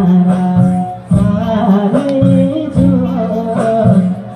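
A man singing a Nepali song live into a microphone over an instrumental accompaniment, played loud through a PA system.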